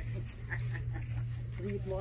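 Steady low engine hum with faint metallic clinks from a steel chain being handled, and a brief voice near the end.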